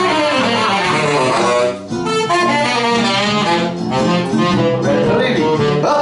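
Small swing jazz group playing live: plucked guitar and bass carry the tune, with tenor saxophone, in a moving stretch of notes. The music dips briefly about two seconds in.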